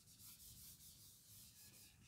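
Faint rubbing of a handheld whiteboard eraser wiping marker ink off a whiteboard, in several short back-and-forth strokes.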